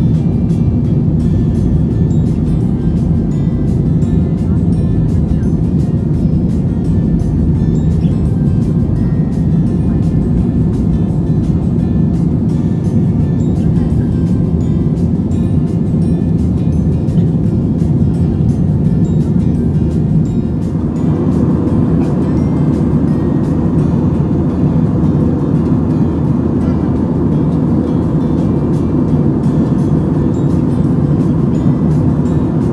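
Music playing over the steady low roar of a jet airliner's cabin during the climb after takeoff. About two-thirds of the way through the sound brightens in the middle range.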